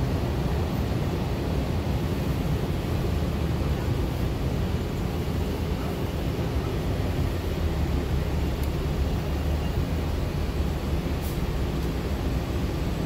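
Steady low rumble inside a moving city bus: engine and road noise heard from the cabin.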